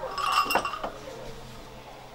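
Small brass bells hanging along the front of a shrine clinking and ringing as a hand brushes them: a few strikes in the first second, then dying away.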